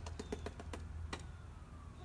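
A quick run of about eight light clicks or taps in the first second or so, then a faint falling tone near the end, over a steady low rumble.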